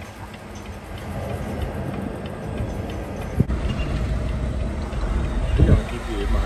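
Semi truck's diesel engine running at low speed, heard from inside the cab while the rig is being maneuvered, with a sharp knock about three and a half seconds in and a thump near the end.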